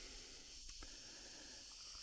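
Near silence outdoors, with a faint steady high-pitched drone of insects such as crickets in dry grassland.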